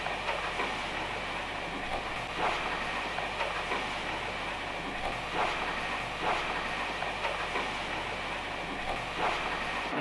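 Steady hiss and rumble of machine-like background noise with a low electrical hum, broken by a few faint, irregular clicks.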